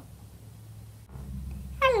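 Low background hum that shifts abruptly at an edit about a second in. Near the end a child's high-pitched voice says a drawn-out "hello" that falls in pitch, voicing the newly made turtle puppet.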